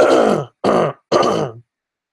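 A man coughing to clear his throat, three bursts in quick succession in the first second and a half.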